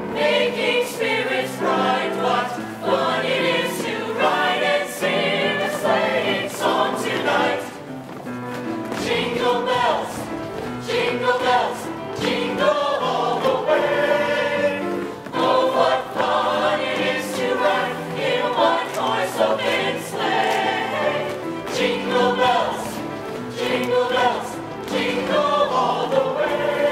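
Mixed show choir of men and women singing together in harmony.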